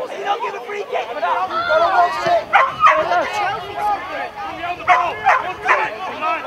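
Indistinct shouting and calls from footballers and touchline spectators while play goes on, with several short, sharp loud calls about two and a half seconds in and again near the end.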